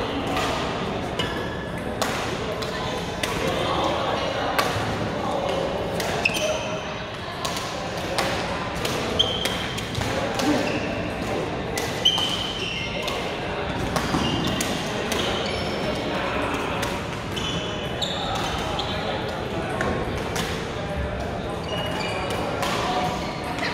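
Badminton rackets striking shuttlecocks in a reverberant sports hall, sharp irregular hits from several courts, mixed with short high squeaks of shoes on the court floor and the steady chatter of players.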